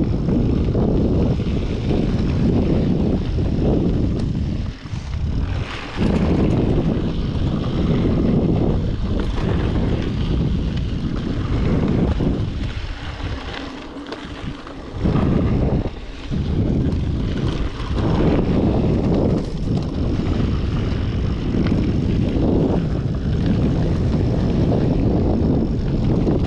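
Wind rumbling over a GoPro's microphone during a fast mountain-bike descent, with tyre noise on a dry dirt trail and knocks from the Yeti SB5 full-suspension bike. The rush drops away briefly about five seconds in and again from about twelve to fifteen seconds in.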